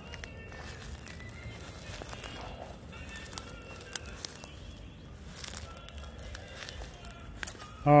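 Quiet rustling and light footsteps through tall weeds and grass, heard as scattered small crackles over a low outdoor background.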